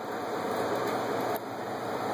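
Steady noise of a walk-in cooler's refrigeration unit running.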